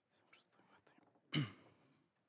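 Faint whispering, with one short sharp bump, loud against the quiet, about a second and a half in.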